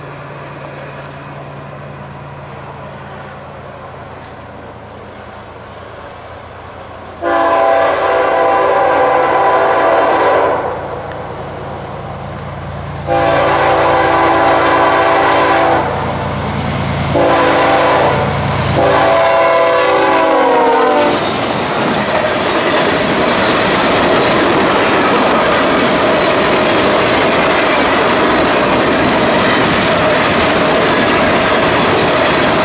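BNSF freight train's diesel locomotives approaching with a steady engine drone, then the multi-chime air horn sounding long, long, short, long, the standard signal for a grade crossing. The last blast falls in pitch as the locomotive passes. The freight cars then roll by with loud clickety-clack wheel noise.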